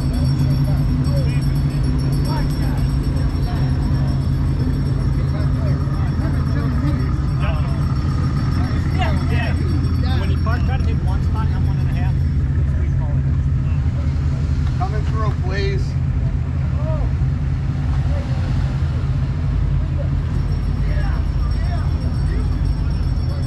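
A car engine running steadily at low revs close by, with people's voices chattering in the middle.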